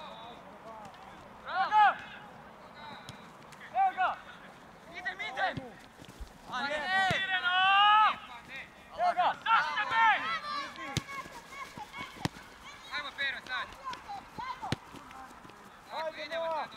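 Football players' shouted calls across the pitch: short, high-pitched shouts, the longest and loudest about halfway through. Three sharp knocks come in the second half.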